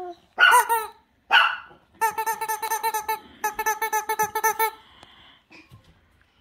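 A baby squeals twice in quick succession, then babbles a fast, even string of repeated high-pitched syllables for about three seconds, with one short break.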